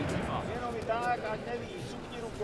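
Indistinct voices of several people talking in a large sports hall, with no clear words.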